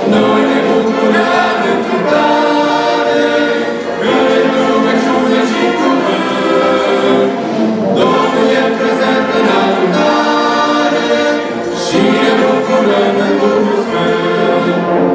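Church brass band of tubas, trombones and trumpets playing a hymn in sustained chords, the phrases breaking about every two seconds.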